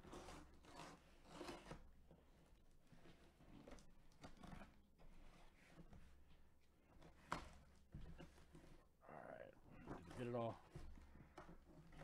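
Faint, irregular scraping and crunching of a utility knife blade slicing through a cardboard box's taped seal, in short strokes. The blade is dull, due for retirement.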